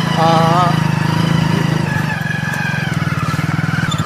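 Motorcycle engine running steadily while riding along, a low, even throb of firing pulses.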